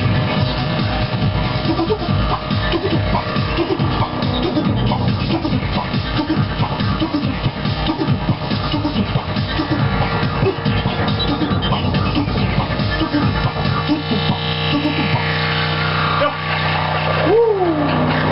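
Electronic house music played live on synthesizers and drum machines: a steady kick-drum beat under synth lines. Near the end the kick drops out for a few seconds under a synth sweep, then comes back.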